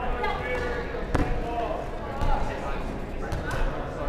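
Dodgeballs thudding on a wooden sports-hall floor during play, several separate hits with the sharpest about a second in, over indistinct players' voices calling across the hall.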